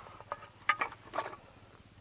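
A few light clicks and knocks as a Soviet Geiger counter is handled and lifted out of its metal carrying case.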